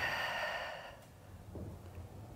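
A woman's long breathy exhale, fading out about a second in, as she works through a tricep extension rep.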